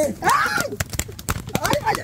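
Open hands slapping and pounding a man's back and shoulders in a rapid flurry of a dozen or so sharp hits, after a brief shout.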